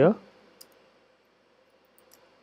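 A few faint clicks of computer keyboard keys being typed, one about half a second in and a couple more near the end.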